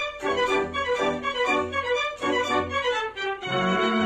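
Orchestral music led by violins, playing a melody of quickly changing notes.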